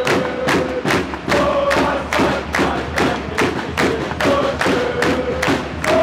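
Handball crowd in a sports hall beating out a fast, steady rhythm, about four beats a second, while chanting in long held notes. The hall gives it an echo.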